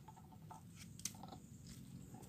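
Near silence with a few faint clicks and light scratchy handling noises, one sharper click about a second in.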